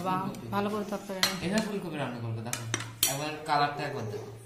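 Metal serving spoons clinking and scraping against melamine plates and serving bowls as food is dished out, with several sharp clinks and short squeaky scrapes.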